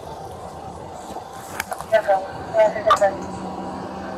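Indistinct voices talking over a steady background noise, with a few sharp clicks.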